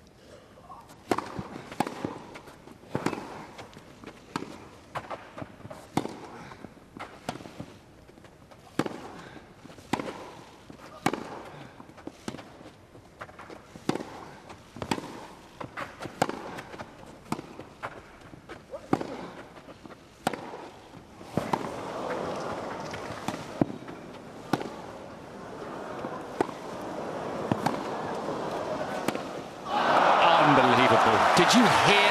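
Tennis ball struck back and forth by racquets on a grass court in a long rally, giving sharp pops about once a second. From about two-thirds of the way in, crowd noise swells under the shots.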